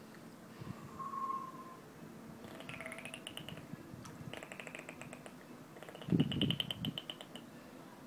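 High, dolphin-like whistles and rapid buzzing pulse trains come in short calls over a few seconds, with a short lower whistle about a second in. About six seconds in there is a louder, low rumbling sound under a held high whistle.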